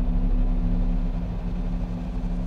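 Dark ambient power-noise music: a dense, steady low rumbling drone with two sustained low hum tones and a grainy noise layer above, without a beat.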